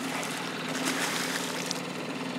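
Water splashing as a hooked pike thrashes at the surface right beside the boat, over a steady low hum.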